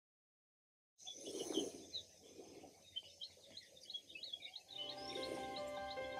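After about a second of silence, many small birds chirp in quick, overlapping calls, with a brief louder low sound soon after they begin. Soft music with held notes fades in near the end.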